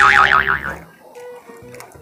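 Cartoon 'boing' sound effect: a springy tone wobbling up and down several times, fading out under a second in.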